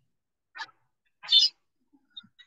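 A small dog yipping twice, the second yip louder and higher.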